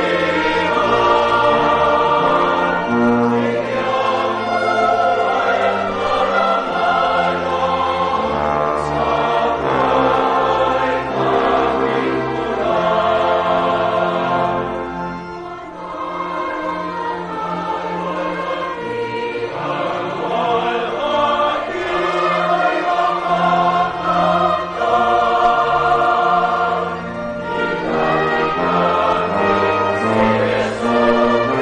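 Choir singing sacred music with instrumental accompaniment, in long sustained phrases. The music briefly eases about halfway through and again near the end.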